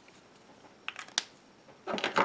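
Two sharp plastic clicks about a second in, a quarter second apart, over quiet room tone, with a short rustle near the end: a Prismacolor alcohol marker being lifted off the paper and handled.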